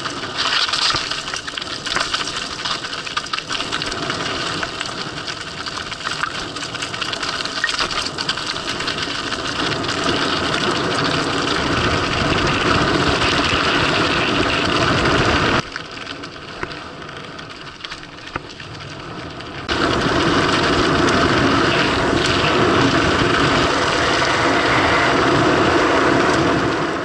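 Mountain bike descending fast over loose scree and gravel: tyres crunching, stones clattering and the bike rattling, under wind rushing over the camera microphone. The noise drops lower for about four seconds past the middle, then comes back louder.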